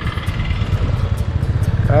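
Royal Enfield motorcycle engine running while riding along, its exhaust pulses heard as a fast, steady low beat.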